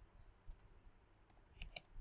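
Computer keyboard typing: a handful of faint key clicks, most in the second half, as a word is typed.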